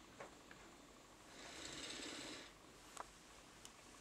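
Near silence: a few faint clicks and a soft rustling hiss lasting about a second in the middle, the quiet sounds of hands working small rubber bands and a hook.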